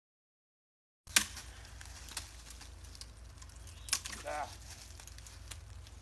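Silence for about a second, then faint forest ambience with a steady low rumble, a few sharp clicks scattered through it, and a brief vocal sound from a person around the middle.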